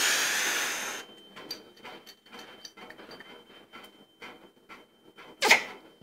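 A chrome angle stop valve being handled and turned, giving many small light clicks and ticks. A loud rushing noise fills the first second, and a short sharp burst of noise comes near the end.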